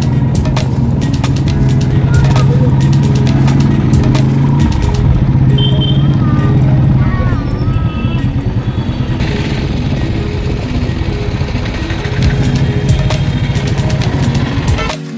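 Engine of a two-wheeler running steadily while riding through city traffic, with wind buffeting on the microphone.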